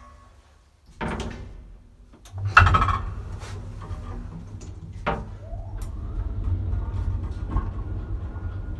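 1950s–60s Sabiem traction elevator: a door shuts with a loud bang, then the car gets under way with a steady low rumble, a whine rising in pitch about halfway through as it picks up speed.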